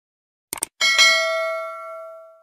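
Subscribe-button sound effect: a quick double mouse click, then a bright bell ding that rings out and fades away over about a second and a half.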